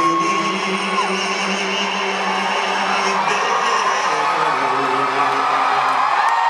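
Live country band playing a slow song, held guitar and keyboard chords over steady crowd noise with whoops and cheers. A long held high note ends about a second in.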